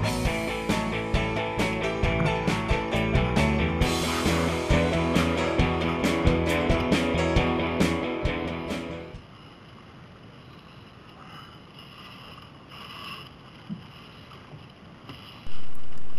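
Rock-style background music with guitar and a steady beat, fading out about nine seconds in. After that comes faint, even wind and water noise from sailing, picked up on the head-mounted camera's microphone.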